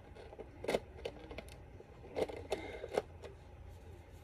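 Small plastic toy packaging being handled and opened by hand: a handful of short clicks and crackles, the clearest about a second in, just after two seconds and near three seconds.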